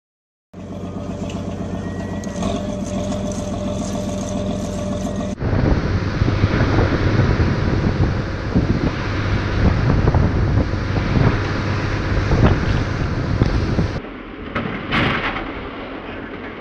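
A boat's engine drones steadily. About five seconds in, a cut brings a louder engine sound mixed with wind and water noise from rough lake chop. For the last two seconds it drops to a quieter background with a few sharp knocks.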